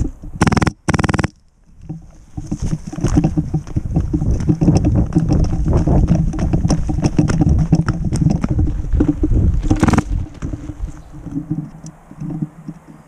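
Person moving quickly on foot over dry leaf litter and grass: footsteps, rustling and gear knocking, with heavy handling noise on the camera. There are loud bumps about half a second and a second in, and another near the end.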